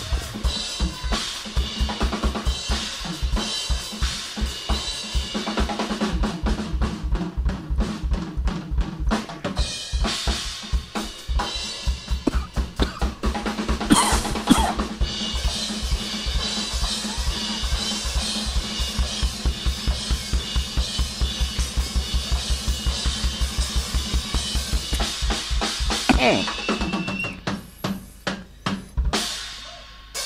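Drum kit in a live funk band performance: a fast, even kick-drum pattern under busy snare and rimshot strokes, thinning out a few seconds before the end.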